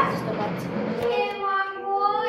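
A high voice singing long held notes, starting about a second in.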